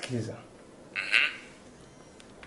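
A man's voice: a short word at the start, then a brief breathy sound about a second in.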